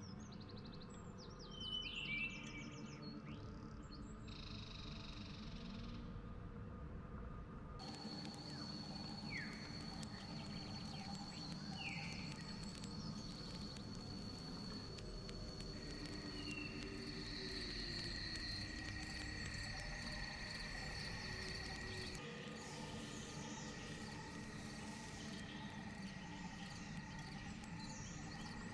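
Forest ambience track played back from a tabletop-RPG sound app: bird chirps and calls over a soft background hum. About eight seconds in, a steady high-pitched insect drone comes in, and a second, lower steady drone joins about halfway through.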